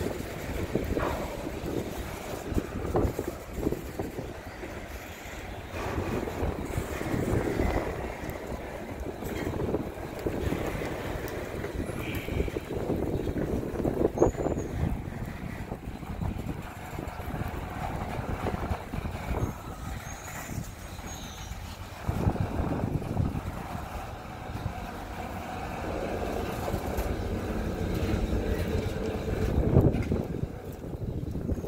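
Covered hopper freight cars rolling slowly past at close range: steel wheels running over the rails with a steady rumble and irregular clunks.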